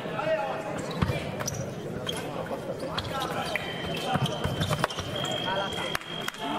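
Fencers' feet stamping and knocking on the piste during a foil exchange, with voices in the hall. About three seconds in, a steady high electronic tone from the scoring machine starts and holds, signalling a registered touch.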